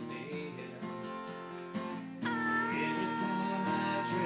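Steel-string acoustic guitar strumming chords, joined about two seconds in by a girl's voice holding one long high sung note.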